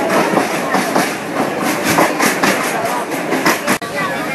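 Passenger railway carriage running along the track, heard from inside the car: a steady rumble and rattle of the running train, with passengers' voices mixed in.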